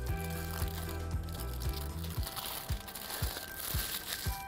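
Tin foil crinkling as it is pulled off the top of a silicone ice-pop mold, louder in the second half, over background music with a steady beat.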